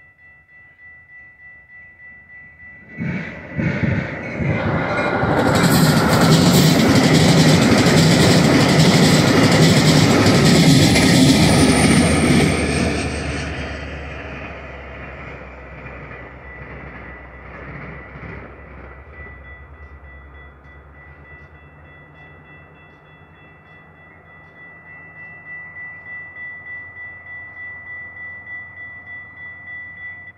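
A railroad crossing warning bell dings steadily while a Metra commuter train passes close by. The train comes in loud about three seconds in, stays loud for about ten seconds, then fades away. The bell keeps ringing after the train has gone and stops right at the end.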